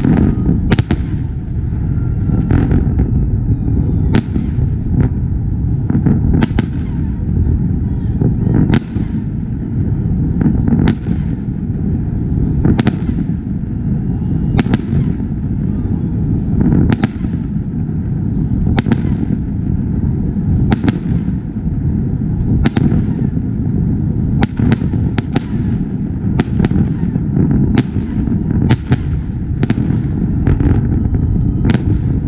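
Fireworks display: sharp bangs of aerial shells bursting overhead, about one every second or two, over a constant low rumble. The bangs come faster near the end.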